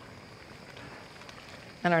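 Quiet room tone with no distinct sounds, then a woman begins speaking near the end.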